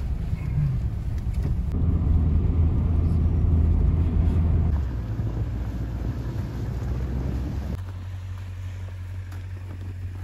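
Steady low engine and road rumble of a 4x4 SUV driving, heard inside the cabin. About eight seconds in, the sound drops to a quieter, even hum.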